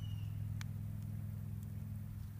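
A steady low mechanical hum, like a motor running at a distance, with one faint click just under a second in.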